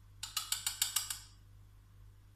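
Rigid plastic food container being handled, giving a quick run of about eight sharp plastic clicks in roughly a second.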